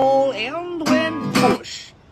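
A man singing to his own acoustic guitar strumming: a held note at the start, then a few shorter notes that bend in pitch, fading away near the end.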